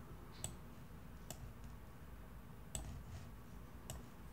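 Faint clicks of a computer mouse, about four, spread out while the levels sliders are being dragged.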